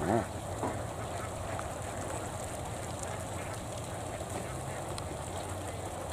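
A large flock of domestic laying ducks quacking together in a steady, dense chatter.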